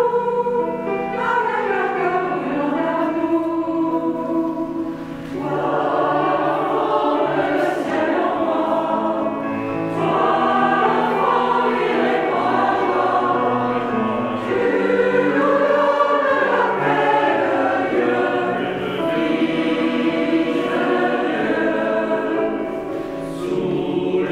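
Mixed choir of men and women singing a carol in parts, holding chords, with a short break between phrases about five seconds in.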